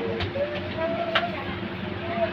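Cabin sound inside a city tour bus: a steady drone with a constant tone, passengers' voices talking, and a few sharp clicks or rattles, the loudest a little past the middle.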